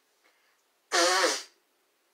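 A single short, breathy vocal burst from a woman, about half a second long, about a second in.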